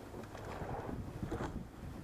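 Rowing pair under way at a low steady stroke rate: wind rumbling on the microphone over the water noise of the shell, with a couple of short knocks about a second apart.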